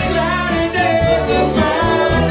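Live band playing a Motown soul song: singing over electric guitars and keyboards, with a steady low bass line.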